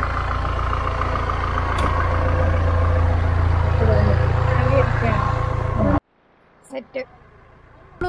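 A Mahindra jeep's engine idling steadily, with faint voices over it; the sound cuts off suddenly about six seconds in, leaving quiet with a couple of brief sounds.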